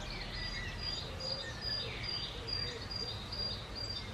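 Garden ambience: birds calling, with a short high chirp repeating about three times a second over a steady low background rumble.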